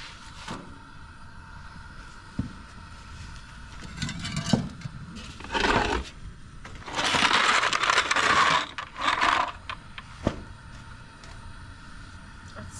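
A flat metal spatula scraping on a saj iron griddle, with baked flatbread rustling as it is lifted and handled. This comes in several short bursts, the longest about seven to eight and a half seconds in, with a couple of sharp knocks between them.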